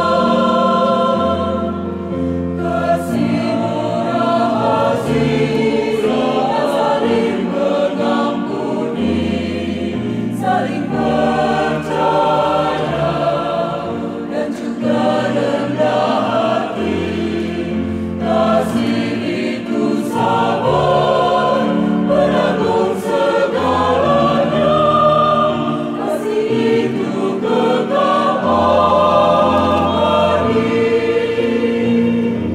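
Mixed choir singing in parts, men's and women's voices together, with sustained low notes from an electronic keyboard underneath.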